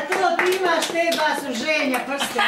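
A small group of people clapping their hands unevenly, with several voices talking over the claps.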